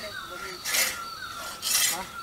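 A large wooden-framed hand saw ripping along the grain of a log, cutting planks. Two strokes, about a second apart.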